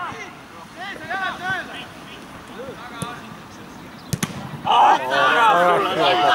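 A football struck hard once about four seconds in, a sharp double thump. Men's voices talk at the start, and loud shouting breaks out just after the strike.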